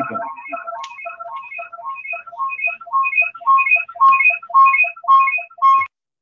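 Electronic phone ringtone: a short pattern of a few beeping notes repeating about twice a second, getting louder from about halfway through, then cutting off suddenly just before the end.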